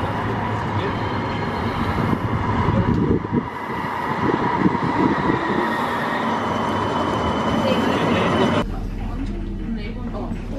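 CAF Urbos 3 tram of the West Midlands Metro pulling into a street stop, its motors whining steadily over the rumble of the wheels on the rails, loudest as it passes close. The sound cuts off abruptly near the end.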